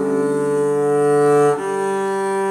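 Double bass bowed arco in long, sustained whole notes on the D- and G-string harmonics, with a bow change about one and a half seconds in.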